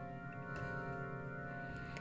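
GarageBand's Grand Organ software instrument playing MIDI notes sent over the network from a Raspberry Pi. A new note comes in about every half second at full velocity and holds on, so the notes stack into a sustained organ chord.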